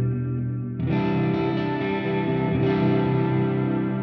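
Electric guitar with a humbucker pickup, played through Blue Cat Axiom amp-simulation software with the Re-Guitar single-coil emulation switched off, giving the guitar's own humbucker tone. A chord is ringing, and a new chord is struck about a second in and left to ring.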